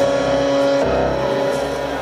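Live rock band of electric guitars and keyboard holding sustained chords, with the pitch shifting about a second in. The drums drop out briefly and come back at the end.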